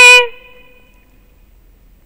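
The held end of a woman's drawn-out spoken word, cut off about a third of a second in, then near silence.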